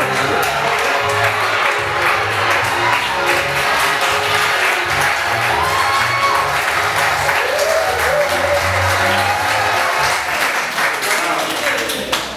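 Audience applauding and cheering over loud music with a heavy bass line, which cuts off at the end.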